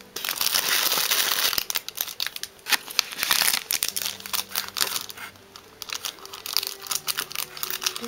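Thin clear plastic packaging bags crinkling and rustling as they are handled, in dense bursts of crackles at the start and again about three seconds in, then lighter, scattered crinkles.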